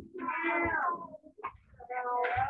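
A drawn-out meow, falling in pitch and lasting about a second, followed by a second meow starting near the end.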